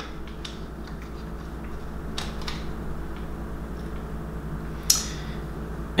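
Faint clicks and light handling knocks from the base-plate clamp knob of a Zhiyun Crane 2 gimbal being turned tight, with a sharper click about five seconds in. A steady low hum runs underneath.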